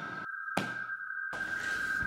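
A steady high-pitched tone, with a single sharp click about half a second in.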